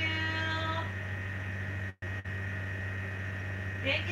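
Steady low electrical hum with a faint steady high tone above it. A voice holds a single note for under a second at the start, and the sound cuts out for a moment about halfway through.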